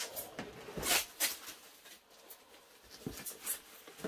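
Plastic sheeting and bubble wrap rustling and crinkling in irregular handfuls as a guitar is unwrapped. The loudest crinkles come about a second in, with another cluster near the end.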